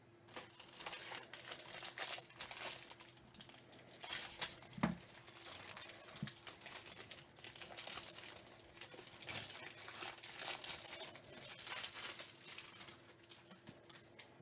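Foil wrapper of a baseball card pack crinkling and tearing as it is opened by hand, in fairly quiet irregular bursts, with a couple of soft bumps about five and six seconds in.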